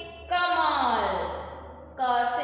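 A woman's voice drawing out one long syllable that slides down in pitch, in the slow sing-song way of reading a Hindi letter aloud to young children.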